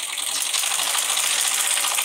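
Sewing machine stitching fabric, its needle and feed mechanism running with a fast, steady clatter.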